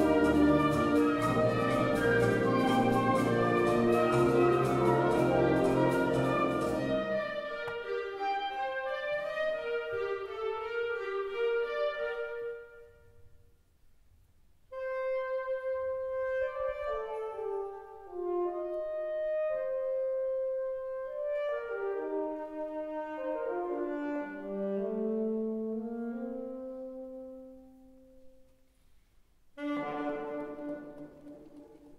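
Concert wind band playing a contemporary saxophone concerto: a loud full-band passage with percussion for about the first seven seconds, thinning to quieter woodwind and brass lines. After a brief pause about halfway, the alto saxophone soloist and band play soft, slow, overlapping held notes that fade out near the end.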